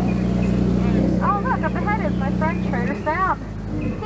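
Tour boat motor running with a steady low drone that drops away about three seconds in, with voices over it.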